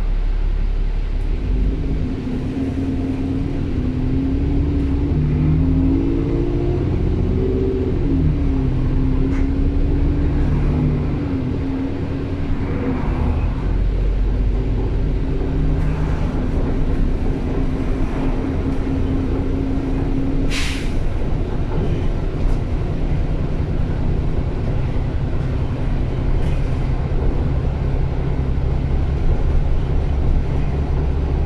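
Diesel engine and running noise of an Enviro400 double-decker bus heard from the upper deck as it drives. The engine's pitch climbs and drops again between about five and twelve seconds in. A brief sharp sound stands out about two-thirds of the way through.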